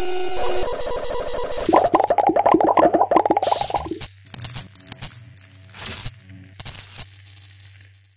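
Electronic intro sting with glitch sound effects: stuttering, rapidly pulsing tones for the first few seconds, then a low hum with scattered bursts of static that fade out near the end.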